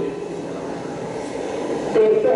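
Steady road and engine noise inside a moving car's cabin, heard on an old film soundtrack during a pause in a man's speech.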